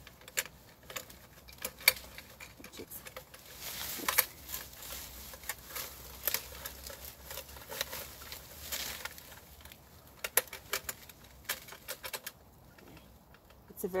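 Rustling of grass and bramble stems with scattered sharp clicks as a metal Longworth small-mammal trap is handled and set in the undergrowth. The rustling is thickest midway and dies down near the end.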